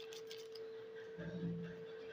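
A steady faint hum, with a few light crinkles of a small coffee sachet being emptied in the first half-second.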